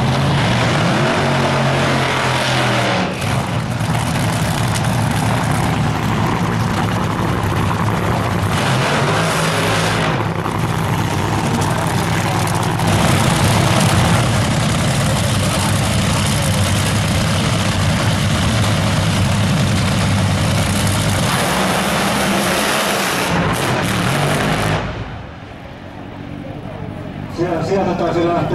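Drag racing cars' engines running at high power, loud and unbroken through burnouts and launches, then dropping off sharply near the end as a dragster pulls away down the strip.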